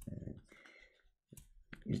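A few short, faint clicks about a second and a half in, in a quiet pause between sentences.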